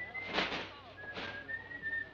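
A person whistling a slow tune in long held notes that step up and down, with a few short scuffing noises in between.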